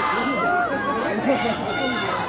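Audience chattering and calling out between songs, many voices overlapping at once.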